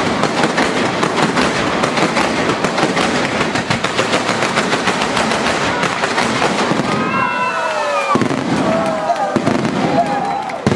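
Fireworks going off in a dense, continuous rapid crackle of small bangs from fountains and crackling stars. About seven seconds in the crackle thins and a falling pitched tone sounds above it.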